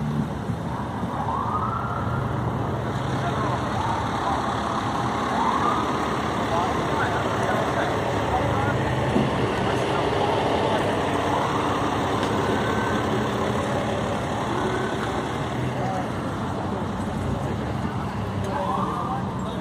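Steady low hum of idling vehicle engines, fire trucks among them, with scattered voices of people talking in the background.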